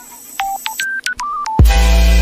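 A quick run of short electronic beeps, one pitch at a time stepping up and down like a phone keypad tune, then about one and a half seconds in a sudden, very loud, bass-heavy distorted blast of music cuts in.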